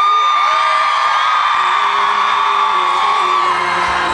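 A woman in the audience screaming one long, high-pitched shriek that is held for about three and a half seconds, with other fans' screams overlapping, over live music.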